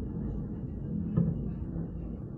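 Distant anti-aircraft gunfire heard as a steady low rumble, with one louder thump a little over a second in.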